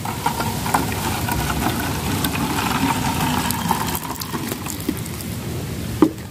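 Liquid poured from a plastic measuring jug into the neck of a plastic bottle, running steadily and tapering off about four seconds in.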